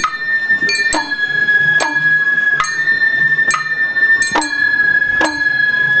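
Festival float music (hayashi): a bamboo flute holding one high note while a small brass hand gong is struck about once a second, each stroke ringing briefly.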